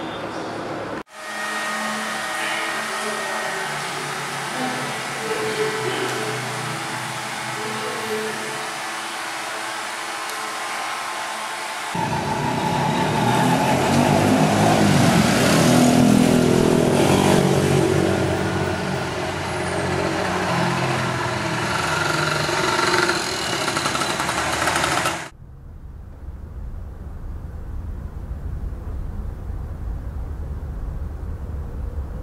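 Street ambience of passing road traffic, including a jeepney driving by, with the sound cutting abruptly about a second in and getting louder and denser near the middle. About five seconds before the end it cuts suddenly to a quiet, muffled low rumble.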